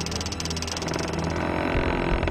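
Title-sequence sound design of turning clockwork gears: a fast, dense mechanical ticking over a low drone, with the ticking easing off in the second half.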